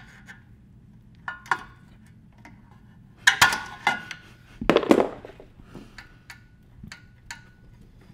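A metal screwdriver clicking and clinking against the throttle and governor linkage of a Tecumseh 6.5 hp engine as the linkage is adjusted. It gives a string of sharp metallic clicks, several with a brief ring, and the loudest group comes about three to five seconds in.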